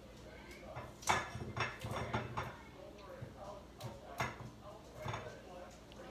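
Several sharp knocks and clatters of objects being handled, irregularly spaced, with faint talk in the background.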